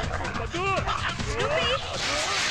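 Dog-like whimpering and yelping: a short, arching whine about half a second in, then a few rising whines near the end.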